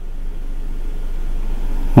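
Steady rushing noise over a steady low hum, carried on a phone-in caller's telephone line and slowly growing louder; no words can be made out.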